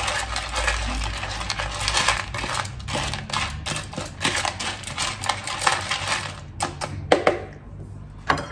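A knife stirring dry cat kibble mixed with wet food in a clear plastic tub: fast, uneven clicking and scraping of kibble and blade against the plastic, dying away about six and a half seconds in, followed by a couple of sharper clicks.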